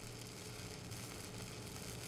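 Stick-welding arc on an E6010 electrode, a low, steady crackle and sizzle as the weld runs.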